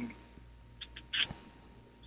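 A pause in a caller's speech on a telephone line: low steady line hum and hiss, with a few short, faint hissy sounds about a second in.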